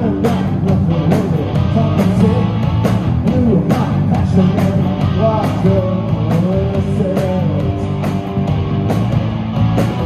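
Live punk rock band playing at full volume: electric bass, electric guitar and a drum kit keeping a steady beat, with vocals singing over them.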